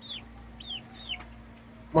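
Two-month-old Indian-breed chicks giving three short, high, falling peeps about half a second apart.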